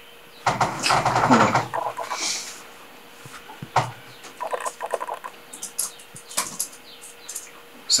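A short burst of movement with a brief low vocal sound in the first two seconds, then a run of light, irregular clicks from laptop keys being typed.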